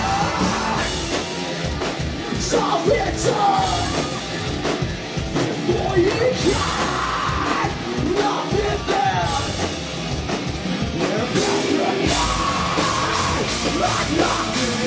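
A rock band playing live: drums and guitar with a singer's vocals into the microphone, loud throughout.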